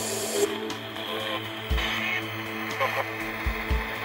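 A recorded man's call-out played backwards through a phone's reverse-speech app, a garbled speech-like stream, over steady white-noise static and hum. There are a few low thumps, one about two seconds in and two close together near the end.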